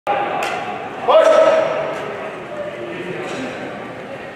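Voices in a large, echoing hall: one loud call of "No" about a second in over background chatter, with a couple of faint sharp knocks.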